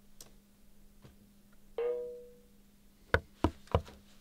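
A short chime rings once and fades, then three sharp knocks on a door come in quick succession, about a third of a second apart.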